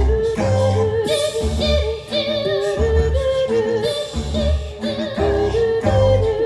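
Small mixed choir of four voices singing in harmony, the notes held with vibrato, over a low bass pulse about once a second.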